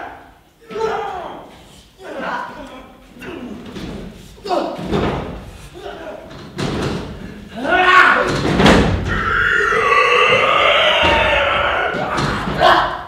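Stage fight: men grunting and crying out as they grapple, with heavy thuds of bodies thrown onto the stage floor. From about two-thirds of the way in, a long, loud shout is held until the end.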